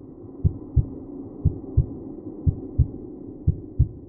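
Heartbeat sound effect: a low double thump (lub-dub) about once a second, over a low steady drone.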